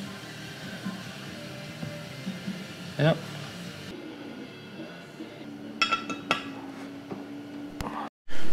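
A few light metallic clinks of a steel hex key against a cast-aluminum transmission pan, about six seconds in, over a faint steady tone.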